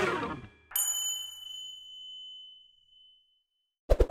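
A bright, high ding sound effect strikes once about a second in and rings out, fading over about two seconds, after the tail of a short musical sting dies away at the start. A few quick clicks come just before the end.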